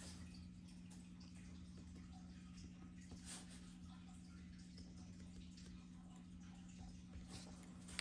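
Near silence: faint scratching of a pen writing on paper, over a steady low hum.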